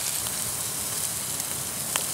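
Slices of sausage sizzling in a frying pan over a canister stove: a steady hiss with small crackles and spits. A single sharp click comes near the end.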